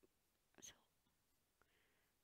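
Near silence, broken about half a second in by one short, faint whispered word from a woman.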